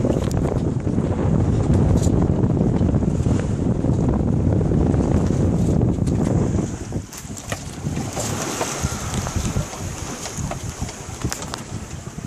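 Strong wind buffeting the microphone aboard a small sailboat in a 20–22 knot breeze. About six and a half seconds in, the wind noise drops sharply as the phone moves into the shelter of the cabin, leaving quieter rushing and a few light knocks.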